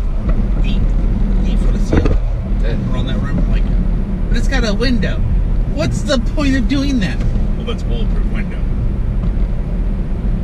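Steady low road and engine rumble inside a moving car's cabin, with a few spoken words around the middle.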